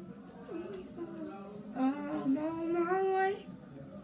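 A child singing a few long, held notes without clear words, starting about two seconds in and stopping a little before the end.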